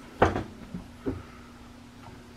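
A freshly tape-bound book set down into the cooling rack of a Fastback 20 binder: one sharp knock about a quarter-second in, then a lighter knock about a second in.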